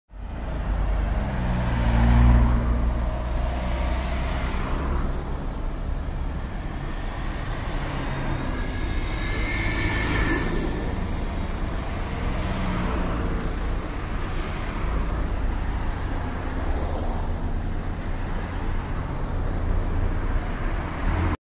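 Steady low rumble of vehicle noise, with a brief higher tone about ten seconds in.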